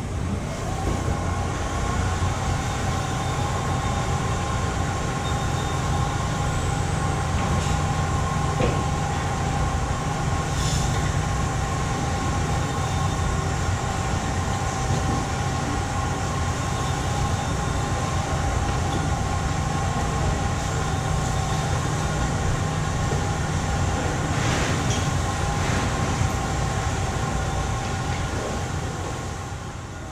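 Steady mechanical drone of machinery with a low hum and two steady whining tones, one of which comes in about a second in, with a few faint clicks or taps on top.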